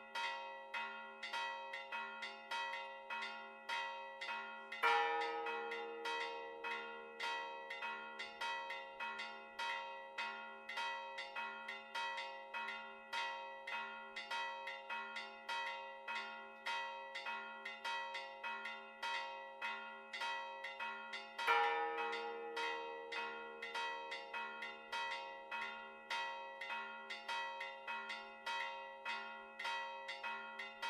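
A four-bell church peal in the Maltese festive style (mota), including bronze bells cast in 1647, 1677 and 1827: rapid, steady strokes of about two or three a second, the bells ringing on between strokes. A louder, deeper stroke stands out twice, about five seconds in and again about twenty-one seconds in.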